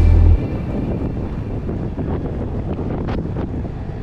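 Wind rushing over the microphone of a moving motorcycle, a steady low noisy rumble. A bass-heavy music track cuts off just after the start.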